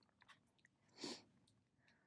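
Near silence, with a few faint mouth clicks and one short, soft breath about a second in.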